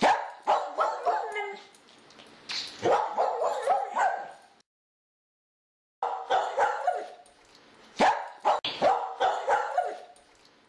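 Animal calls: quick runs of short, pitched yaps, broken by a silence of about a second and a half in the middle.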